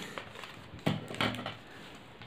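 Paper handling as a folded origami sheet is worked and set down on a wooden table, with a sharp knock a little under a second in and a lighter one just after.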